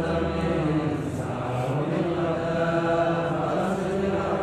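Voices chanting a line of Arabic grammar verse together in a slow, drawn-out melody, the pitches blending rather than forming one clean voice.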